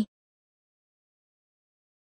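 Complete silence, the sound track cut to nothing, after the tail of a spoken word at the very start.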